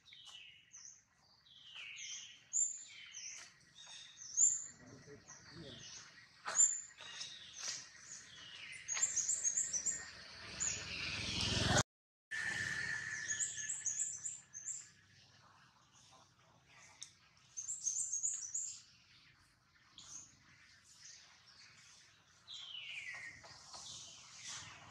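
Small birds chirping throughout, with short high calls in quick clusters and some falling calls. A rush of noise builds for a few seconds and cuts off suddenly about twelve seconds in.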